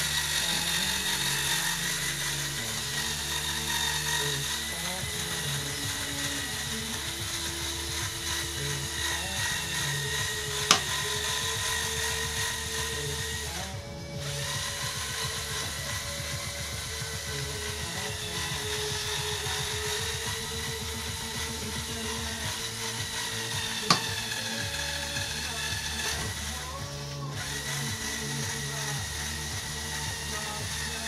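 Small electric motors and plastic gears of a LEGO-built trail jeep whining as it crawls over logs, the whine rising and falling with the load. Two sharp clicks, one about a third of the way in and one near the end. Music plays underneath.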